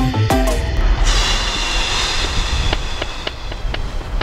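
The intro theme music, drum hits with pitched notes, ends about a second in. It gives way to a steady outdoor background hiss with scattered light clicks.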